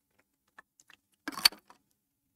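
A few faint clicks, then a short clatter of small hard objects about one and a half seconds in.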